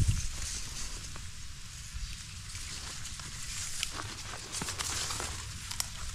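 Water splashing and dry reeds rustling as a hand grabs a pike at the water's edge and lifts it, with a few sharp clicks and ticks scattered through.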